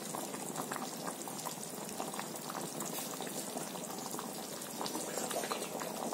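Thick curry gravy with lentil dumplings simmering in a pan: a steady bubbling made of many small pops.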